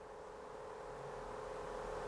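Faint room noise with a steady hum, slowly growing louder.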